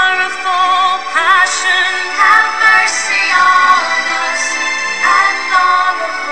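A woman singing a slow sung prayer, her held notes wavering with vibrato, over sustained accompaniment.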